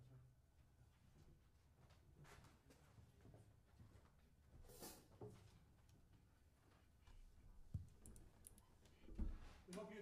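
Near silence: quiet hall room tone with a few faint, scattered clicks and knocks from people moving about the stage and settling at the pianos. A man's voice begins just before the end.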